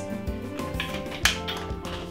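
Background music with steady instrumental tones, and a sharp tap about a second and a quarter in.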